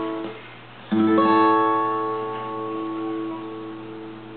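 Acoustic guitar played fingerstyle. The last notes die away, then a chord is struck about a second in and left to ring, slowly fading.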